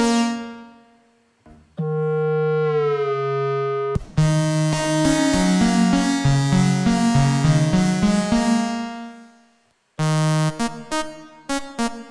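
Lead presets of the Shaper iOS synthesizer being played. A held note bends down in pitch, then a fast pulsing run of notes steps up and down for about five seconds. After a brief gap come a few short stabbed notes.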